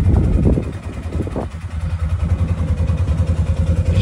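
ODES Dominator Zeus side-by-side UTV engine idling steadily.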